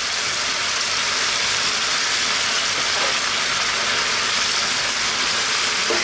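Sauce, broccoli and onion sizzling steadily in a wok over high heat, around pieces of battered fried fish just dropped in.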